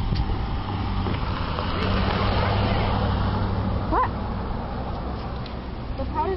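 Car engine roaring, a steady low drone that swells about two seconds in.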